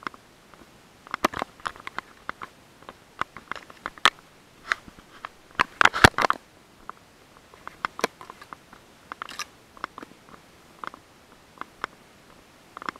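Close crackling and rustling while pushing along a trail overgrown with tall grass: irregular sharp crackles and scrapes, thickest and loudest about six seconds in.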